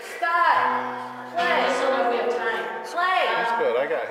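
A woman's voice, amplified, sliding down in pitch three times, over a held low instrument note that stops a little after two seconds in.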